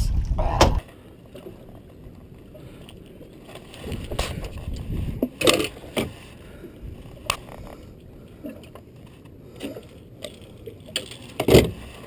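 Scattered short knocks and thumps as a freshly landed blue catfish is handled aboard a fishing boat, the loudest knock near the end. A low rumble, wind on the microphone as the fish comes out of the water, stops just under a second in.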